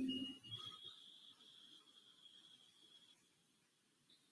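Near silence, opening with the last of a mallet-like electronic chime dying away. A faint, thin high tone lingers until about three seconds in.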